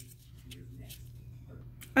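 Faint handling sounds, a couple of soft clicks and rustles, as a lip gloss tube is put back into its case and a small cardboard product box is picked up, over a steady low hum.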